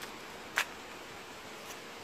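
Quiet outdoor background with a single brief hissing noise about half a second in.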